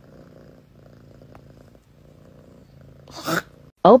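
A cat purring faintly and steadily, with a brief louder sound about three seconds in.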